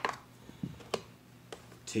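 A few short, sharp plastic clicks as fingers handle the side brush and underside of a flipped-over Ecovacs Deebot N79 robot vacuum, pulling wound-up strings off the brush: one click right at the start, another about a second in, and a fainter one after that.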